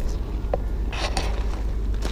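Steady low rumble of wind buffeting the camera's microphone, with a few short scuffs about half a second and a second in.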